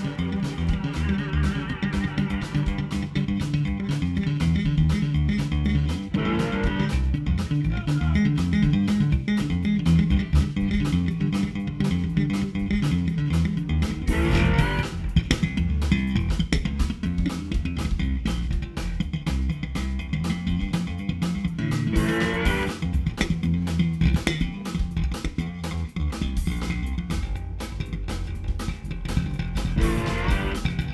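Electric bass guitar solo, a busy run of low notes, with drums keeping time behind it and bright upward sweeps of sound about 6, 14 and 22 seconds in.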